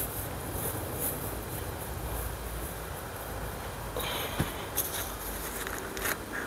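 Soft rustling of straw mulch and a few small knocks as a seedling is handled and planted, over a steady low background rumble. A short, brighter scrape comes about four seconds in.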